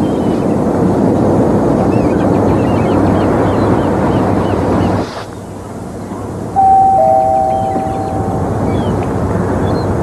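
A loud, steady rushing background ambience with faint high chirps in it, which drops away about five seconds in. About six and a half seconds in, a held two-note chord of background music enters and lasts about two seconds.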